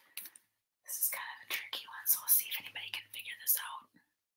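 A person whispering, starting about a second in and stopping just before the end.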